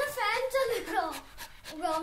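A pet dog whining in drawn-out calls that waver up and down in pitch, with panting, as it pesters its owner for attention.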